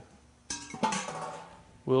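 Metal cookware clanking once about half a second in, with a short metallic ring that fades over about a second.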